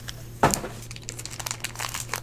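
Foil trading-card pack wrapper crinkling as it is picked up and handled, with one sharp crinkle about half a second in and smaller crackles after.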